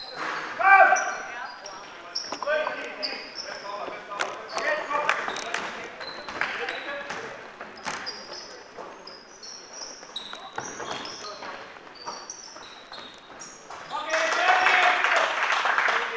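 Basketball game in a sports hall: sneakers squeaking on the court floor in many short high chirps, the ball bouncing in scattered knocks, and players' voices shouting, loudest about a second in and again over the last two seconds.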